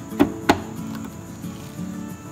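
Two sharp clicks, about a quarter of a second apart, from a Singer sewing machine's plastic stitch-selector dial turned by hand to a buttonhole step, over steady background music.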